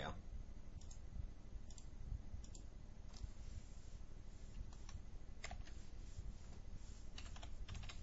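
Computer mouse clicks and keyboard keystrokes: a few scattered single clicks, then a quick run of typing near the end, over a faint low hum.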